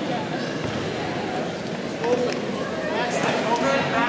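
Overlapping voices of spectators and coaches talking and calling out in a large gym hall, none of it clear enough to make out words.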